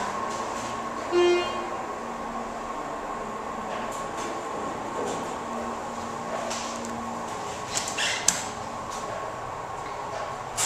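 Schindler hydraulic elevator travelling, with a steady hum and held tones from the running pump and drive. A short low tone sounds about a second in, and a few light clicks follow later.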